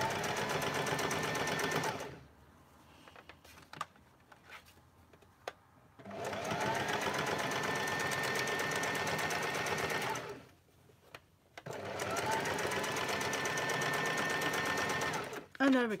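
Electric domestic sewing machine stitching a curved sleeve seam in three runs of a few seconds each. Each run speeds up as it starts, then holds steady. The short pauses between them hold a few small clicks, where the machine is stopped to readjust the fabric around the curve.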